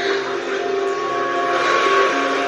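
Tense soundtrack from a TV drama: several low held tones sounding together over a steady hiss, with a higher held tone joining about a second in.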